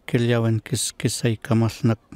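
Speech only: a man speaking in Toba-Maskoy, in a steady run of syllables.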